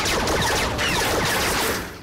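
Cartoon laser-blaster effects from ceiling-mounted security turrets: a dense, rapid barrage of zaps fired as warning shots. It starts abruptly and dies away near the end.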